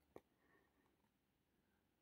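Near silence: room tone, with one faint click just after the start.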